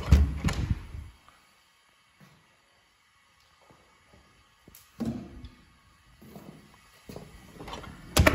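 Knocks and low thumps of a panelled interior door being handled and pushed as someone walks through the doorway. There is a cluster in the first second, near quiet in the middle, then smaller knocks from about five seconds in to the end.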